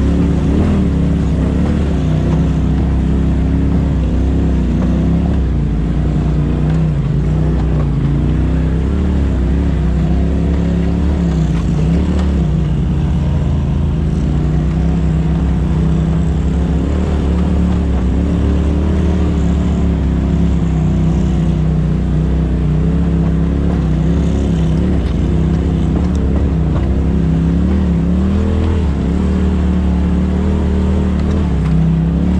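Polaris RZR side-by-side's engine running steadily under the driver, its pitch rising and dipping a little with the throttle as it works along a rocky trail.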